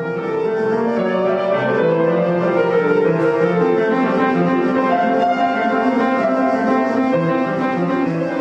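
Classical music played on a grand piano, with many sustained, overlapping notes. It swells in over the first second, then carries on at a steady level.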